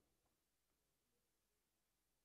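Near silence: dead air between news items.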